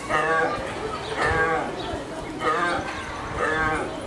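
Fallow deer calling: a loud bleating cry repeated four times, about once a second. It is the cry that fallow does use to find their fawns in the herd.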